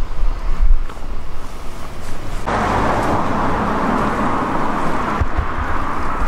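Steady city street traffic noise that starts abruptly about two and a half seconds in, over a low rumble of wind on the microphone.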